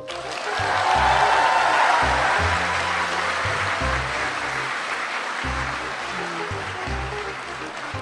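A large audience applauding, swelling about half a second in and slowly tapering off, over background music with a steady low beat.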